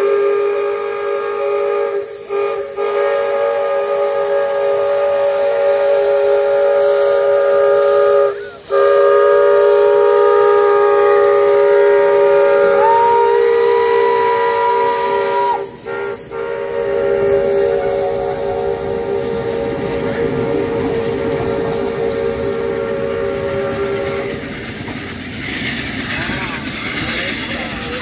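Steam whistle of the U8 narrow-gauge steam locomotive sounding one long, loud blast, broken by a few short gaps, with steam hissing. The whistle stops a few seconds before the end, leaving the hiss and rumble of the locomotive pulling away.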